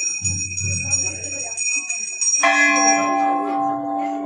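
Hanging temple bells ringing: a high ring carries on throughout. About two and a half seconds in, another bell is struck and rings on with a fuller, lower tone, slowly fading.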